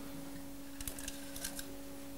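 Faint small clicks and handling noise from hands working inside an opened foil-type flight data recorder, taking out its metal recording foil, over a steady low hum.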